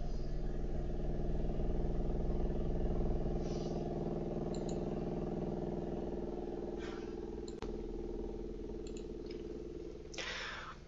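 A steady low mechanical hum, like a motor running, with a few faint clicks, the clearest about seven and a half seconds in.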